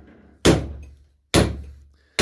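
Two hammer blows on the laminated steel core of a transformer clamped in a bench vise, less than a second apart, each followed by a brief ring as it dies away. The blows are driving the core out through the copper coils.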